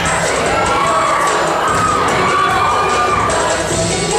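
Crowd cheering and shouting over a show choir's singing and accompaniment during a dance break.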